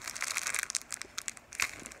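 Thin plastic crinkling and crackling in irregular bursts as a packaged inflatable pool ring is handled.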